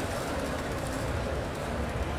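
Steady background din of a large exhibition hall: an even low rumble under a general wash of noise, with no distinct events.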